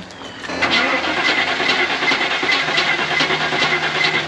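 Starter motor cranking the 1995 Range Rover Classic's fresh 4.6-litre V8 with the fuel pump fuse pulled, so the engine turns over without firing, in a steady rhythm of about four pulses a second. The cranking begins about half a second in. The engine is being spun on the starter to see whether it builds oil pressure after the oil-pressure light came on.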